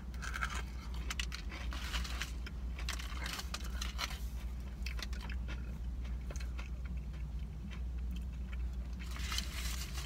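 Biting into and chewing a KFC Zinger fried chicken sandwich close to the microphone: many small crunches and wet clicks, busiest in the first few seconds and again near the end, over a steady low hum.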